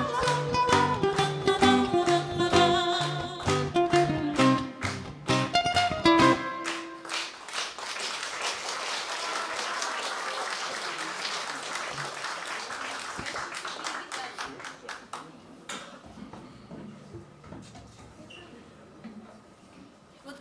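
Classical acoustic guitar and ukulele playing the closing bars of a song, stopping about six seconds in. Audience applause follows and fades out over about ten seconds.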